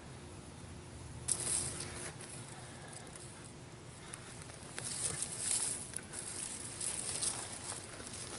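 Hands scraping and sifting through loose, dry garden soil while digging out potatoes: a dry, hissing rustle that comes in bouts, once briefly about a second in and again for a couple of seconds from about five seconds in.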